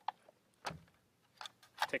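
A few light metallic clicks, spread out and separate, from a Gewehr 43 semi-automatic rifle being handled after reassembly, its bolt held open on the magazine follower.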